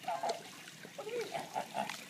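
A toddler making short, high-pitched fretful whimpers, one near the start and a quick run of them in the second half, a sign that she is uneasy about being held over the water.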